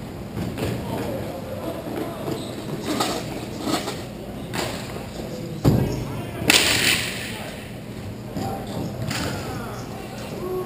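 Hockey play near the goal: a string of sharp stick and impact knocks, then a heavy thud about halfway through and, a second later, the loudest crash, a longer rattling hit. Players' voices call underneath.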